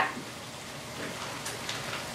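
Faint, steady sizzling from food cooking in a stainless steel skillet on a countertop burner.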